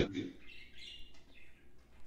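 Faint high bird chirps in the background, coming in short bits through the first second or so.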